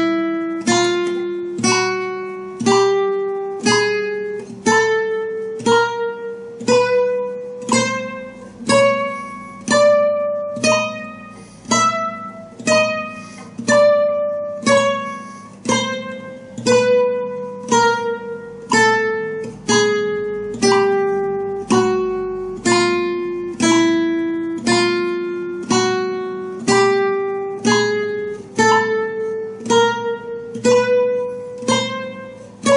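Nylon-string flamenco guitar playing a slow chromatic scale on the first string only, one plucked note at a time, about one and a half notes a second. It climbs a fret at a time, turns back down about halfway through, and starts climbing again near the end.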